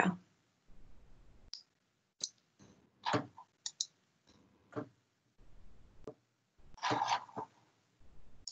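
Several sharp, irregular clicks at a computer, made while the shared slides of a video call are being brought back up.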